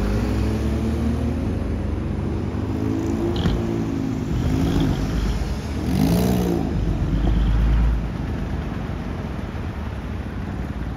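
Diesel engines of a line of decorated trucks driving out, with a lowered kei car passing close about six seconds in. The engine note rises and falls as vehicles go by, with a heavy low rumble near the middle.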